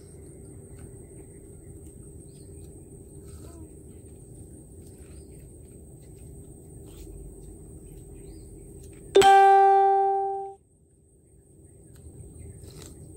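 Faint, steady background with a low hum. About nine seconds in, a single loud ringing musical note sounds and fades over about a second, then cuts off abruptly.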